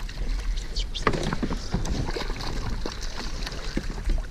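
A hooked bass splashing and thrashing at the water's surface close beside a kayak, with irregular sloshing and scattered sharp knocks and clicks from gear against the hull.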